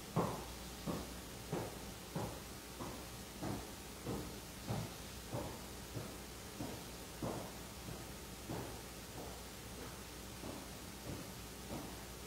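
A steady marching cadence of short thumps, about three every two seconds, growing fainter in the second half.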